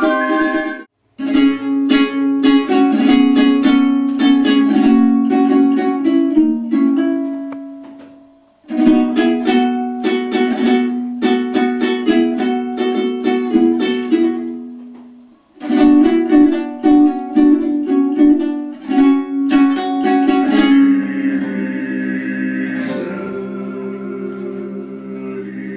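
A Georgian panduri, a small plucked folk lute, strummed in quick rhythmic phrases, broken by short pauses twice. Near the end, male voices come in holding long notes.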